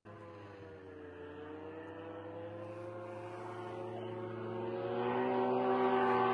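Engine of a long-range attack drone in flight: a steady droning hum with a clear pitch that grows steadily louder as the drone comes nearer.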